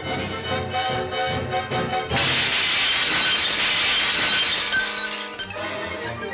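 Orchestral cartoon score, broken about two seconds in by a loud, long crashing sound effect that lasts about three seconds before the music resumes.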